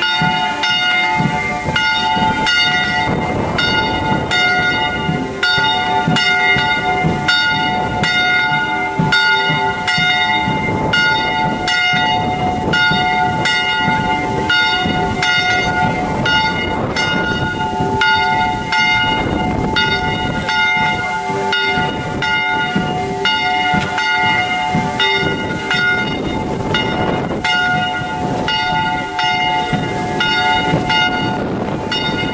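Church bells ringing continuously, struck over and over in a steady rhythm, their several clanging tones sustaining between strikes.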